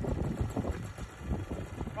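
Wind buffeting the microphone over a low, uneven engine rumble, with a few faint knocks.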